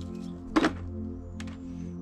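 Background music with one loud thunk about half a second in, as the old magnet is knocked against the plastic bucket to shake off the screws and bits of metal it has pulled from the fire pit ash; a faint tick follows a little later.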